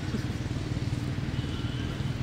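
Steady low rumble of distant city traffic, with motorbike engines among it.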